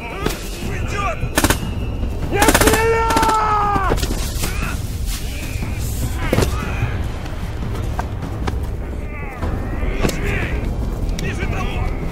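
War-film battle soundtrack: single gunshots and a rapid burst of automatic fire about two seconds in, with a man's long yell over the burst and shorter shouts later, all over a steady low rumble.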